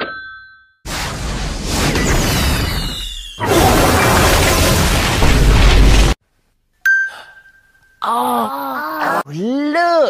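Explosion sound effect: a loud crashing blast with a deep rumble that lasts about five seconds and cuts off abruptly. A short ding follows, then pitch-warped voice sounds near the end.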